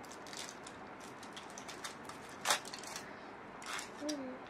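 Chocolate bar wrapper being opened by hand: soft, scattered crinkling and ticking of the wrapping, with one louder crackle about two and a half seconds in.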